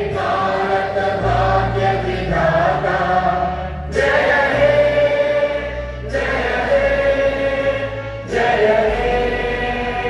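A choir singing a slow song with instrumental backing, in long held notes that change every couple of seconds.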